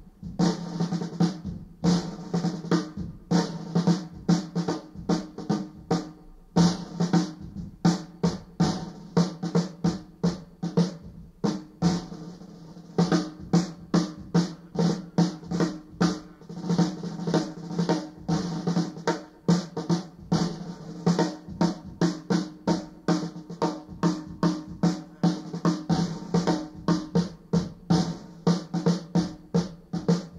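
Unaccompanied jazz drum kit playing a tune's melody on drums tuned to pitch, in rapid strokes and rolls, with brief lulls about six and twelve seconds in.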